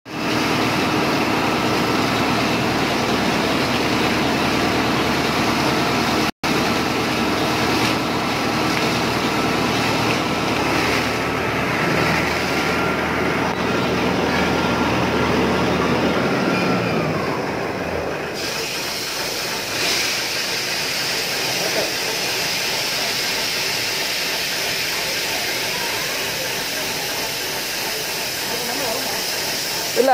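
Borewell being flushed with compressed air from a truck-mounted compressor, which drives silty water up and out of the well: a loud, steady rushing hiss over an engine drone. About 17 seconds in the low drone fades away and the rushing sound carries on.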